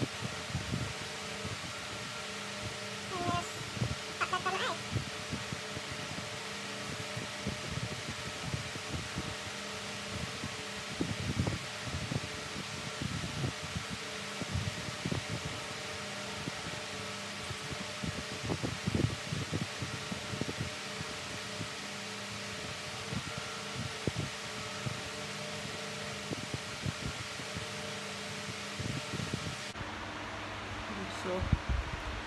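Electric fan running with a steady hiss and hum, with frequent soft knocks and rubs of hands handling things close to the microphone.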